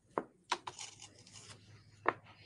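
A few light clicks in the first second, then soft rustling: beads being handled on a paper plate and threaded onto twine.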